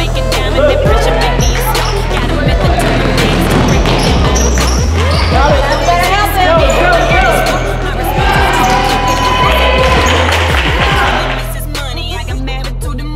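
Basketball bouncing on a gym's hardwood floor with many sharp knocks and players' and spectators' voices during play, over hip hop music with a steady bass line. Near the end the game sounds drop away and the music carries on alone.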